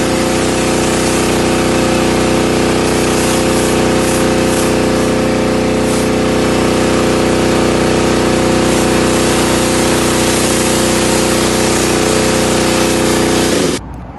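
Pressure washer running steadily at a constant pitch, its motor humming under the hiss of the water jet, until the sound cuts off abruptly near the end.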